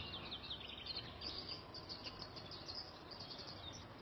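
Faint outdoor ambience: a low, even hiss under many quick, high-pitched chirps.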